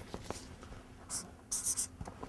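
A marker pen writing on flip-chart paper: two short strokes, the first a little after a second in and a longer one near the end.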